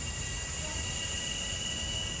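A steady low rumble with a hiss over it and a thin, steady high whine, with no distinct events.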